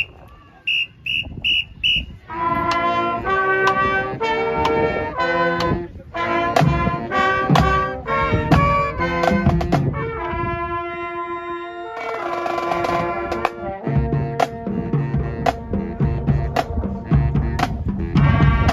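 Small school pep band of trumpets, clarinets, saxophones and trombone, with bass drum and snare drum, playing brass chords over a drum beat. The playing starts about two seconds in, after four short high beeps that count the band in.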